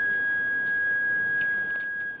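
A loud, steady high-pitched whistle held at one pitch: the ring of microphone feedback through the public-address system.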